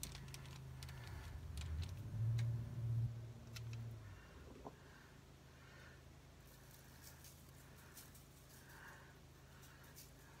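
A few faint clicks and light knocks of plastic spice shaker bottles being handled on the counter. Under them runs a low hum, loudest about two to four seconds in.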